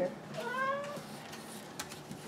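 A Maine Coon cat gives a single meow rising in pitch, while stretching up at a closed door to be let out.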